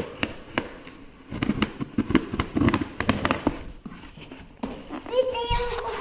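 Packing tape and cardboard being torn open on a shipping box: an irregular run of crackling snaps. A child's voice calls out near the end.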